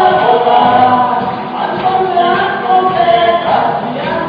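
Live worship praise song: many voices singing together with a small band of acoustic guitar and drums.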